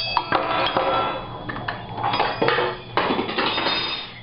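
Metal forks and spoons clattering and clinking, a run of sharp knocks with a ringing after each, spread across the few seconds.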